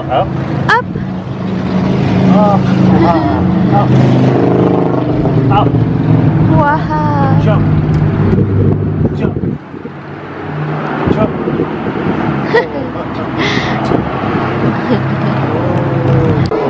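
A car engine running close by, a steady low hum that drops out briefly a little past halfway and then comes back. A toddler's short high squeals and babble sound over it.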